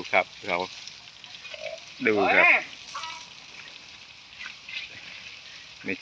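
Water spraying from a garden hose in a steady hiss, pattering onto wet mud and an elephant calf's back.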